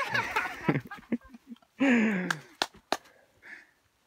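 A man's excited, breathy exclamations and laughter, then a few sharp snaps of twigs and pine branches breaking as he pushes through a tree, about two and a half to three seconds in.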